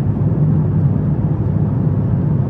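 Steady low rumble of airliner cabin noise inside an Airbus A350-900 in cruise, the engines and airflow heard from the economy cabin.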